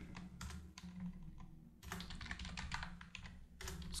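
Typing on a computer keyboard: a short burst of keystrokes near the start, a pause, then a longer run of fast typing from about two seconds in.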